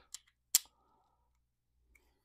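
A single sharp click about half a second in, after a faint tick just before it: a small hard part being handled.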